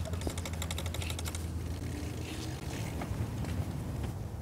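Bicycle freewheel ratchet ticking rapidly as the bike coasts, for about a second, with a few fainter ticks later, over a steady low hum.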